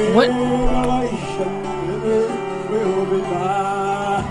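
Church praise-and-worship song: a man singing over guitar accompaniment, with held notes and a gliding sung melody.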